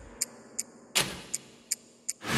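Cinematic ticking sound effect: sharp, evenly spaced ticks, about two and a half a second, with a heavier hit about a second in.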